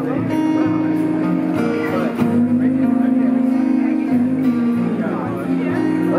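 Live acoustic rock band playing: strummed acoustic guitars over a drum kit, in an instrumental stretch of the song.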